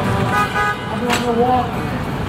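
Voices of a crowd talking over city street traffic, with a short horn toot about half a second in and a sharp click just after one second.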